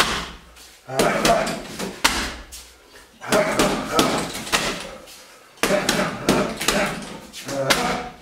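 Gloved punches and kicks landing on a hanging heavy bag: a string of hard thumps, about one a second, some in quick pairs.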